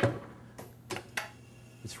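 Several light, irregular clicks and taps at a bench-top screen printer as a printed part is swapped for a new one on its work stage.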